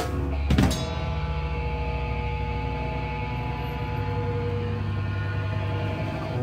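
Live rock band ending a song: two final drum and cymbal hits in the first second, then held guitar and bass chords ringing out steadily through the amplifiers.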